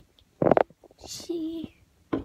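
A girl's voice saying a few short words between brief pauses.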